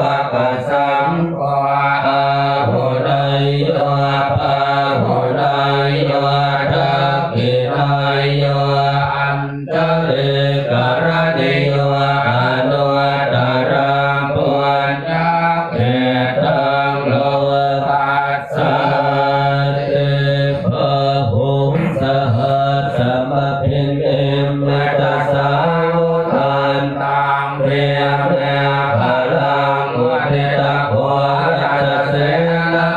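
Buddhist monks chanting Pali verses in unison, a continuous drone held mostly on one steady low pitch.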